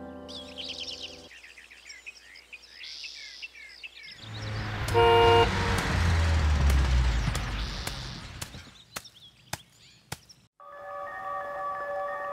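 A large truck passing close by, its engine rumble and road noise swelling and fading, with one short horn blast about five seconds in. Birds chirp before it passes, and a few sharp clicks follow.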